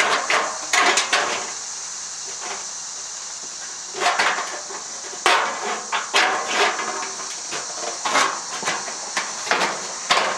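Wiss M400 offset compound-action aviation snips cutting painted galvanized steel roofing: sharp metallic crunching snips, a couple near the start, then after a pause of about two and a half seconds a run of about two snips a second as the cut works around a raised rib of the panel.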